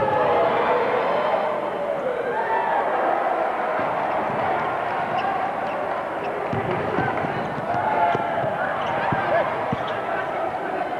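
Crowd noise in a basketball arena with a man's commentary over it, and a basketball bouncing on the court a few times in the second half.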